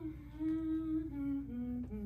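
Someone humming a slow descending tune, each held note a step lower than the last, with a slight waver on the lowest note near the end.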